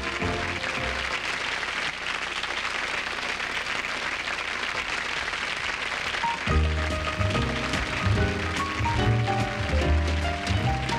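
A swing brass band cuts off right at the start, and a nightclub audience applauds for about six seconds. Then a small jazz combo starts an intro with piano and bass.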